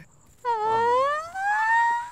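A person's long drawn-out cry that starts about half a second in and climbs steadily in pitch for about a second and a half.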